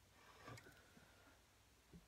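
Near silence: room tone, with a faint soft sound about half a second in.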